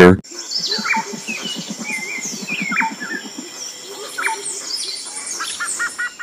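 Several birds chirping and calling, with short whistled notes and sharp falling chirps, over a low rapid pulsing during the first half. A quick run of about five even notes comes near the end.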